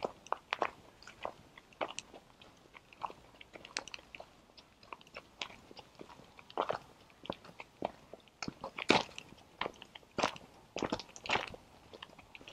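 Footsteps crunching on a gravel path, an irregular run of sharp crunches a few times a second, louder in the second half.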